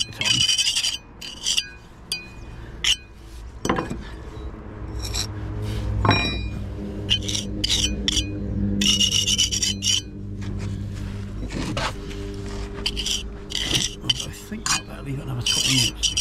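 Small steel pointing trowel scraping and rubbing wet mortar into brick joints in short, irregular strokes, with a steady low hum underneath from about four seconds in.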